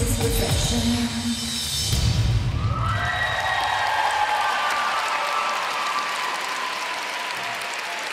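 Music with a heavy beat stops about three seconds in, and an arena crowd applauding and cheering takes over.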